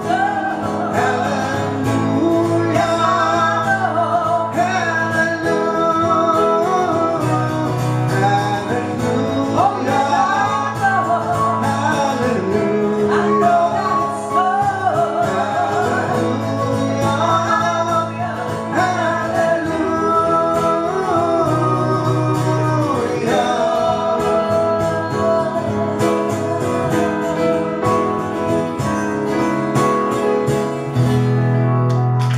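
Live song: an acoustic guitar played under a woman and a man singing together, long held, sliding vocal notes over the guitar's steady chords.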